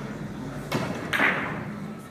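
Two sharp knocks about half a second apart, the second louder with a brief ringing tail, over the steady hum of a large hall.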